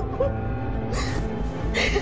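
Sombre dramatic background music with a man crying over it: a small whimper early on, then two sharp, sobbing gasps for breath, one about a second in and one near the end.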